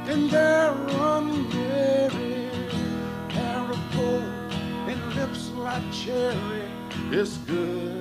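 A man singing a country song in a rough, soulful voice, holding and bending notes, over his own strummed acoustic guitar.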